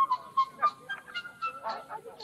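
Geese honking in short, irregular calls, about two a second, over a held, stepping melody on a pipe or flute.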